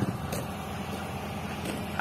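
Heavy lorry's diesel engine idling, a steady low hum.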